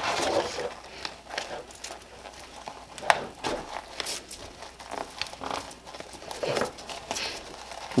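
Nylon pouch and belt webbing rustling, with scattered clicks and scrapes from a polymer clip being worked through micro MOLLE webbing on a duty belt.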